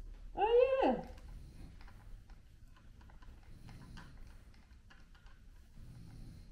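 A woman's short high-pitched vocal exclamation from inside a full-face snorkel mask, rising and then sliding steeply down in pitch, about half a second in. Faint rustling and small clicks follow as the mask is handled.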